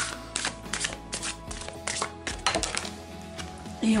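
Soft background music under a run of light clicks and taps from a deck of oracle cards being handled and set down on the table.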